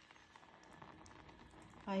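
Faint, soft handling sounds of a foil sauce sachet being squeezed out over cooked instant noodles, with a woman's short exclamation right at the end.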